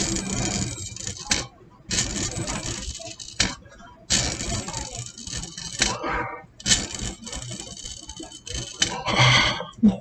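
Breathing through the mouthpiece and corrugated tube of a volumetric incentive spirometer: four long breaths of about one and a half to two seconds each, with short pauses between. It is a lung-expansion exercise, keeping the indicator ball between two marks.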